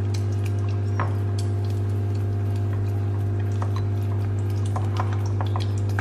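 A steady low electrical hum, with a few faint clicks and light handling sounds as a spring-roll wrapper is folded around filling in a ceramic bowl.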